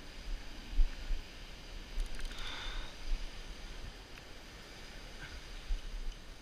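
Wind buffeting the action-camera microphone in uneven low gusts over the steady wash of surf on the beach, with a brief louder rush of breaking water about two seconds in.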